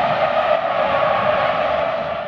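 Racing car engine sound used as a transition effect: a loud, steady roar with no change in pitch.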